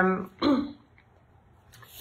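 A woman's drawn-out hesitation sound at the start, then a brief throat clearing about half a second in, followed by a quiet pause in room tone.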